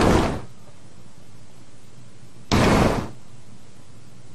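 Two heavy bangs about two and a half seconds apart, one right at the start and one about two and a half seconds in, each dying away within half a second.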